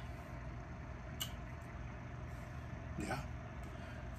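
Quiet room tone with a steady low hum, a faint click about a second in, and a man's short "yeah" near the end.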